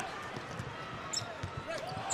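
Basketball being dribbled on a hardwood court, repeated bounces over steady arena crowd noise.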